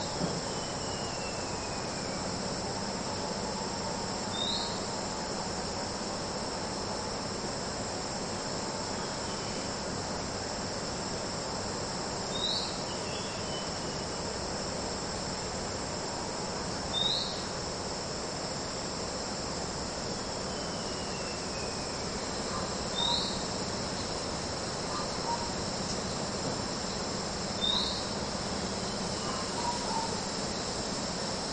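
Steady high-pitched insect chorus, with a short chirp standing out every few seconds, six times in all.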